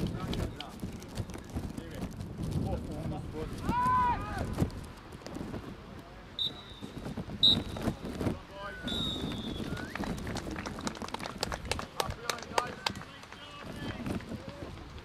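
Voices shouting across an outdoor football pitch, with three short, shrill referee's whistle blasts in the middle.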